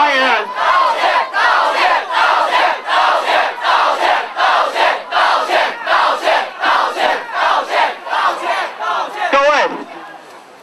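A crowd of protesters chanting a slogan in unison, loud and rhythmic, with short shouted syllables about twice a second. The chant ends on a falling shout just before the end.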